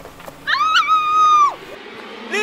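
A single high-pitched cry about a second long: it rises with a quick waver, holds steady, then drops off sharply.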